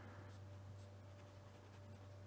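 Faint scratching of a felt-tip fineliner pen writing on paper, a few short strokes, over a steady low hum.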